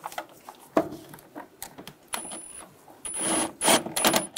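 Cordless power tool with a socket tightening a worm-clamp screw on an intake hose: a few light clicks of the tool being fitted, then the motor running in short bursts with a high whine, the longest about three seconds in.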